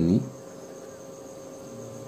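A last spoken word at the very start, then steady, fairly quiet background room tone with a faint even hum.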